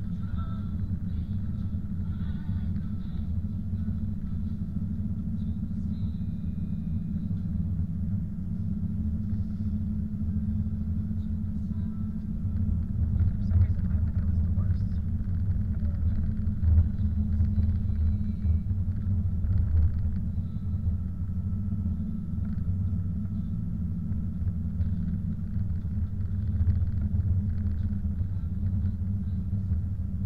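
Steady low rumble of a car driving on a snow-covered road, heard from inside the cabin: tyre and engine noise.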